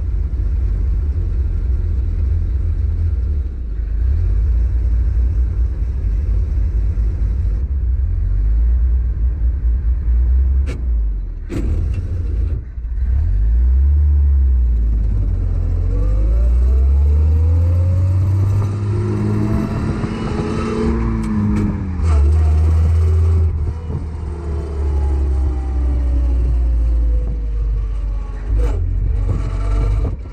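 The 1917 Hudson Super-Six's six-cylinder engine runs with a steady low drone as the open car drives along. About halfway through, the engine note climbs over a few seconds, peaks, then falls back.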